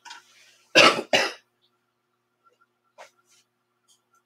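A person coughing twice in quick succession, two short, loud coughs about a second in.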